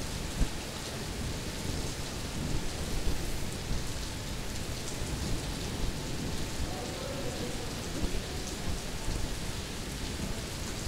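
Heavy rain falling, a steady hiss with a low rumble underneath.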